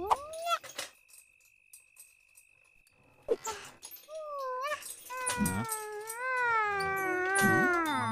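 A cartoon girl's voice without words: a brief sliding whine at the start, a pause of near silence, then a long crying sound from about four and a half seconds in that wavers up and down in pitch and trails off at the end.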